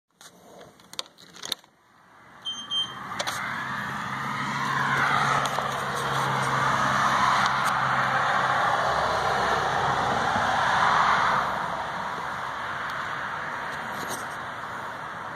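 A door latch clicking and a short electronic beep, then a car passing by, its noise swelling and then fading over about eight seconds.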